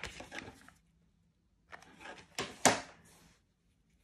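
Fingers pressing and handling glued fabric on a small earring blank: soft rustling and rubbing, with two sharp clicks about two and a half seconds in, the loudest sounds here, and quiet stretches between.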